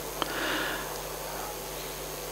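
A man breathing in through his nose close to the microphone in a pause between phrases, a soft sniff-like intake lasting about half a second, preceded by a small click. A faint steady hum lies underneath.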